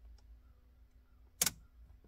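A single sharp click about one and a half seconds in, over a faint low steady hum.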